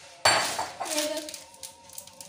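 Crisp packets being handled and opened over a glass bowl on a stone kitchen counter: a sudden clatter about a quarter second in, then crinkling and small clinks.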